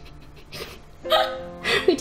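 A woman's stifled laughter that she can't hold in, breaking out in a loud breathy burst about halfway through and rising into high squeals near the end, over soft background music.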